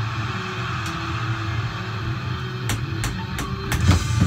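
A rock song's guitar intro playing from a recording, with a strong bass line underneath. About three-quarters of the way through, drumsticks begin striking rubber drum practice pads, giving about five sharp taps in quick succession.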